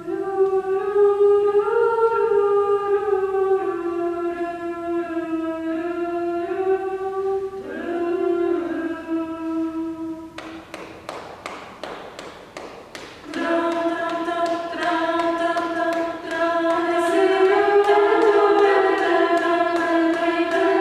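Women's a cappella group singing in close, sustained chords. About ten seconds in, the singing breaks off for some three seconds of quick, sharp percussive hits, then the chords come back in.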